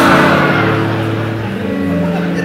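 Held chords on a keyboard, changing once partway through, with the congregation laughing underneath.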